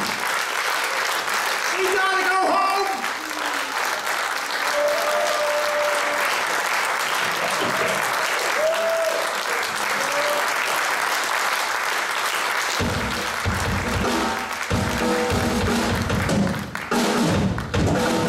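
Audience applauding and cheering, with a few short pitched notes over it. About thirteen seconds in, a live rock band starts playing, drums to the fore.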